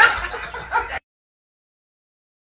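Choppy cackling sounds that cut off abruptly about a second in, followed by dead silence.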